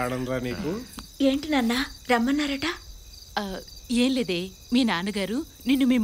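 Crickets chirring steadily in the background, a continuous high note under spoken dialogue, the voices being the loudest sound.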